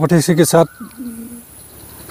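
A dove cooing once, briefly, about a second in, just after a man's voice stops.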